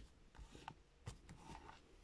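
Faint light taps and rustles of a Rider-Waite tarot deck being handled on a paper surface, a few soft clicks as the cards are touched and turned.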